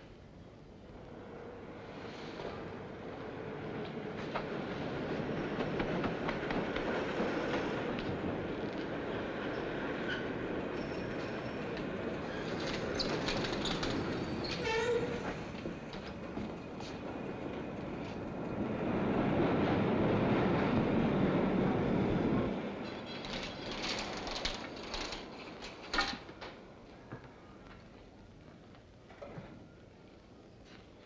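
Elevated railway train passing by: a rush of wheel-on-rail noise that builds over several seconds, swells loudest about two-thirds of the way through and cuts off sharply about three-quarters in. A few sharp knocks follow.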